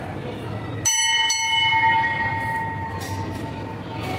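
Hanging brass temple bell struck twice by hand, about half a second apart. It rings on with a clear, several-toned ring that fades over the next two seconds or so.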